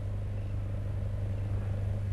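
A steady low hum with a faint rumble beneath it, holding the same pitch and level throughout.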